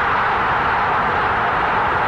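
Football crowd cheering a goal, a loud, steady, unbroken wall of noise.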